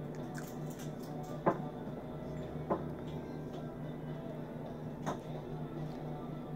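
Three soft clicks, about one and a half, three and five seconds in, over a faint steady low hum: e-juice being tasted straight from a glass dropper and the dropper put back into its bottle.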